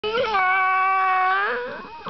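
Bull terrier 'singing': one long, steady howl that lifts a little in pitch near the end and then fades.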